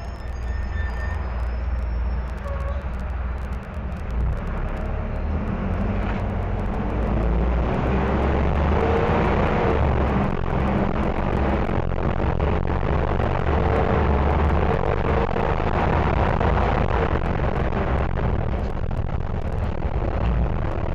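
Mercedes-Benz OM-904LA diesel engine of a city bus running under way, with its Allison automatic transmission; the sound grows louder about seven seconds in and stays loud.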